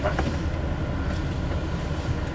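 KiHa 183 series diesel express train running, heard from inside the passenger cabin: a steady low rumble of engine and wheels on rail.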